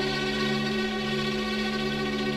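Hindi film-song orchestra holding a quiet, steady sustained chord on bowed strings.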